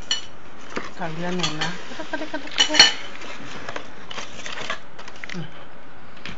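Cardboard pizza boxes being moved and knocked about on a table: scattered knocks and clatter, the loudest about three seconds in. A short murmured voice sound comes about a second in.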